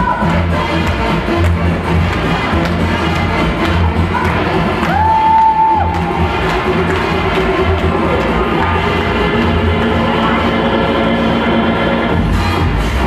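Afro-Cuban mambo dance music with a steady bass beat, with the audience cheering over it. A single held high note stands out about five seconds in.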